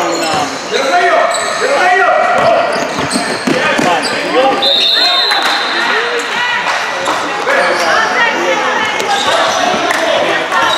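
Basketball game sounds in a large echoing gym: sneakers squeaking on the court floor and a basketball bouncing, among players' voices. Near the middle a high steady whistle sounds for about a second and a half.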